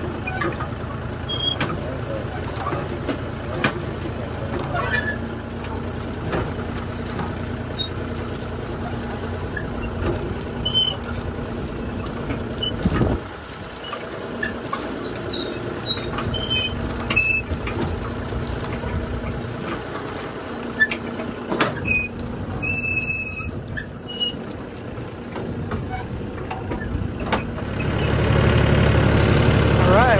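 John Deere tractor engine running steadily while pulling a water-wheel transplanter through rolled rye, with scattered clicks and short high chirps. Near the end the engine grows louder and deeper.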